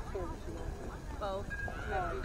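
Indistinct, overlapping voices of several people calling out, with one drawn-out call whose pitch falls, a little past the middle.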